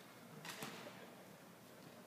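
A futsal ball kicked on an indoor court: two sharp knocks in quick succession about half a second in, over a faint room background.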